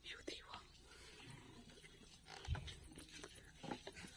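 Faint, low voices of people close by, with one dull thump about two and a half seconds in.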